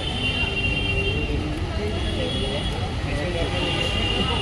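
Busy shop ambience: indistinct background voices over a steady low rumble, with a faint steady high-pitched tone.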